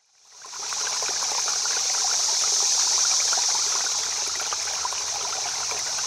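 Running water, like a small stream, with a fine bubbling crackle; it fades in over about the first second and then runs steadily.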